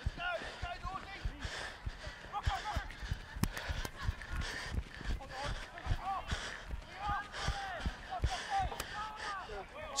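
Running footsteps thudding on grass, about two to three a second, picked up close to the microphone, with faint distant shouts from players.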